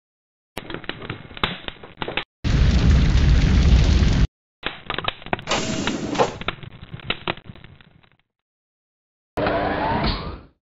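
Fire and explosion sound effects for an animated logo: crackling and popping, a loud deep blast lasting about two seconds, then more crackling that fades out about eight seconds in. After a second of silence, a short burst with a rising tone comes near the end.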